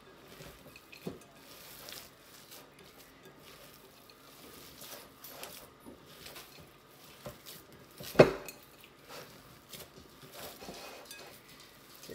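Hands kneading ground beef and stuffing mix in a glass bowl: faint, irregular squishing with small taps, and one sharp knock about eight seconds in.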